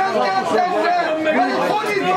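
Several voices shouting and chattering over one another: players and onlookers calling out during play at a football match.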